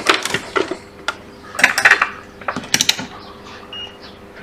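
Three quick runs of small mechanical clicks from a multimeter's rotary selector being turned to diode mode, followed near the end by a short, faint high beep.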